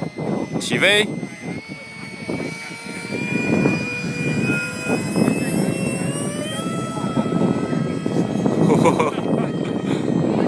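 Electric ducted-fan whine of a Habu model jet, rising slowly in pitch for several seconds as it throttles up and takes off, then dropping lower about two-thirds of the way in as it passes away.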